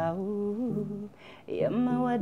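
A woman singing a slow melody, holding long notes that step up and down, with a short break just past the middle before the next phrase starts.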